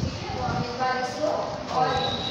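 A person's voice speaking or chanting, the words unclear, over a run of soft low knocks.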